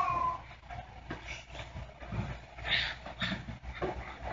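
Low room noise with a high drawn-out whine that ends about half a second in, followed by scattered faint short noises and rustles, one brighter than the rest near the middle.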